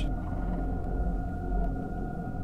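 Ambient background music: a low, steady drone with two high held tones and no beat.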